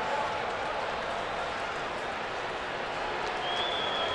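Ballpark crowd noise, a steady wash of crowd sound and applause, just after a home run lands in the left-field seats. A faint steady high tone comes in near the end.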